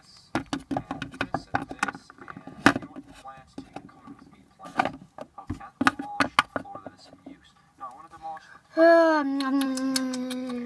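Rapid clicks and taps of small plastic toy figures being handled and knocked on a surface, with brief bits of voice. Near the end a child's voice holds one long note that slowly falls in pitch.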